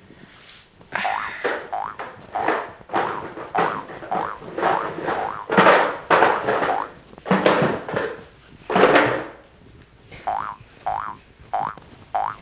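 Cartoon 'boing' sound effects timed to comic hopping and waddling steps, with light music under them. From about ten seconds in, the effects become a quick even run of short rising boings, a little under two a second.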